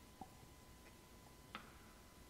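Near silence with two faint clicks of altar vessels being handled: one just after the start, and a sharper one with a brief ring near the end.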